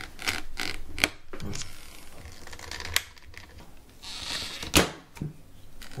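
A Phillips screwdriver pressing and prying at the plastic trim clips of a steering wheel: scraping, with a string of sharp plastic clicks and snaps, the loudest about five seconds in, as the clips give way.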